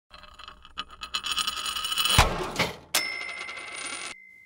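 Channel-intro sound logo: a shimmering, jingling build-up that grows louder for about two seconds, a thump, then a bright bell-like ding about three seconds in that keeps ringing as it fades.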